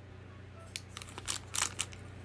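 A plastic bag of clear plastic sewing-machine bobbins being squeezed in the hand: a run of sharp crinkles starting about a second in, loudest near the end, over a low steady hum.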